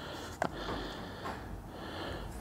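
Quiet room noise with one short click about half a second in, as two motorcycle batteries are held and handled side by side, with a nasal breath from the man holding them.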